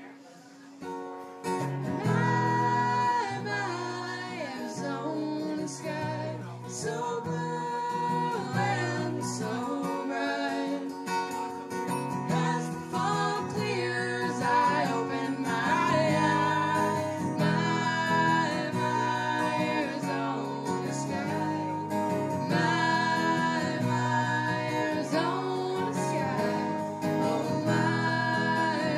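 Live acoustic song: a steel-string acoustic guitar strummed in chords, starting about a second and a half in, with a woman singing over it.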